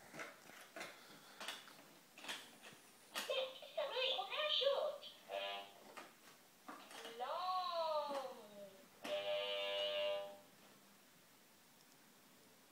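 Baby's plastic electronic activity table being played with: a few clicks of its buttons being pressed, then four short electronic sound clips from its speaker, voice-like phrases and steady tones. It falls quiet about ten and a half seconds in.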